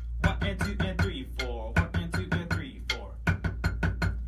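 Wooden drumsticks striking a rubber practice pad on a marching snare drum: a steady run of check strokes, about four a second.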